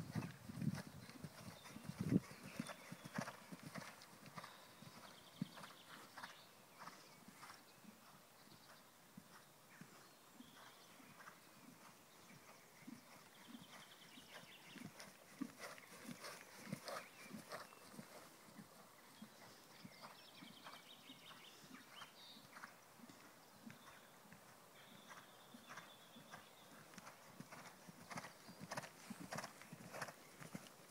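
Faint, irregular clip-clop of hooves, about two or three steps a second, with a few louder knocks in the first couple of seconds.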